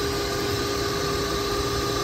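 A vacuum running steadily: an even rushing drone with a constant hum through it.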